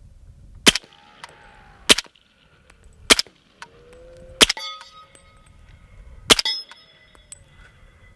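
Brethren Arms MP5-style rifle chambered in .300 Blackout fired as five single shots at uneven intervals of about one to two seconds. Each shot is followed by a faint metallic ringing.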